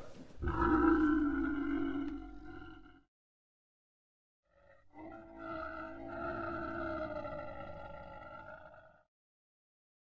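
Two long, drawn-out animal calls at a steady pitch, the first about two and a half seconds long and the second about four. Each cuts off abruptly.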